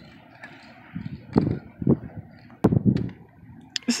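Handling noise as wooden decor signs are moved and swapped in the hands: a handful of low thumps and one sharp click over a faint outdoor hiss.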